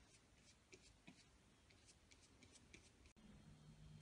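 Near silence with faint, brief scratches of a paintbrush stroking paint onto a cork coaster.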